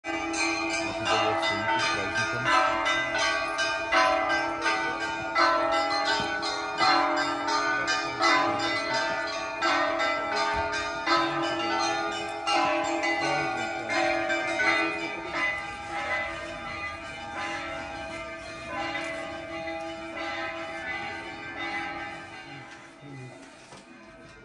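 Orthodox monastery church bells rung in a full peal: rapid strikes of the small bells under a heavy bell struck about every second and a half. The ringing fades steadily toward the end.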